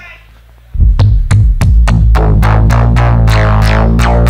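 Modular synthesizer suddenly starts sounding, loud, about a second in. It plays a deep, held bass drone under repeated sharp electronic hits, each falling quickly in pitch, several a second and coming faster toward the end.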